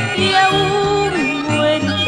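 A pasillo, the Ecuadorian song form, playing from a 45 rpm single: a held, wavering melody over a bass line that steps from note to note.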